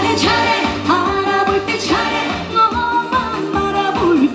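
A woman singing a Korean trot song live into a handheld microphone over amplified backing music with a steady beat.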